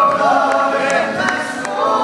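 Male gospel trio singing in close three-part harmony into microphones, holding sustained notes with vibrato.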